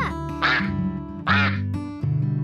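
Two cartoon duck quacks about a second apart, over a short children's TV theme jingle.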